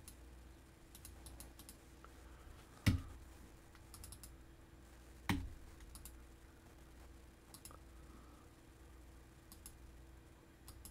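Computer keyboard keystrokes and mouse clicks, scattered and faint, with two louder sharp knocks about three and five seconds in.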